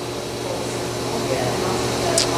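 Steady hum and hiss of operating-room equipment with a low steady tone underneath, growing slightly louder.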